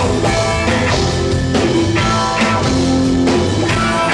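Rock band playing live and loud: electric guitar chords ringing over drums.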